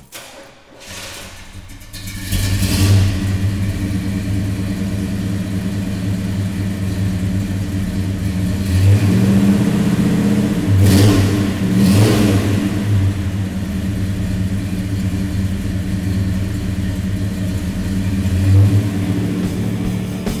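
1972 Buick GS V8 starting, catching about two seconds in, then idling steadily with several short revs of the throttle, around the middle and once near the end.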